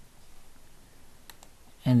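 Two quick clicks of a computer mouse or keyboard a little over a second in, over faint room tone.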